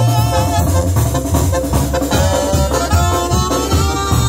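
Live band playing instrumental dance music: two saxophones play held notes over keyboard, a steady bass line and drums.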